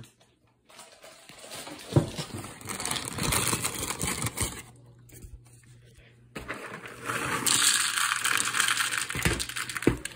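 Count Chocula cereal poured from its box into a bowl: a rattling patter of small dry pieces hitting the bowl, in a shorter spell about two to four seconds in and a longer, louder one over the last few seconds. A sharp knock comes about two seconds in.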